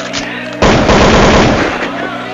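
Gunfire sound effect: a sudden, loud burst of rapid automatic fire starting about half a second in and fading out after just over a second, over a steady music bed.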